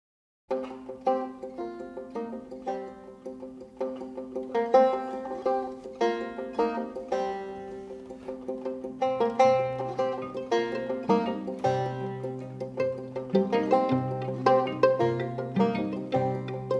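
Instrumental opening of a string-band folk song: a banjo picks a quick, rhythmic run of notes, starting just after the beginning, and low bass notes join about nine seconds in.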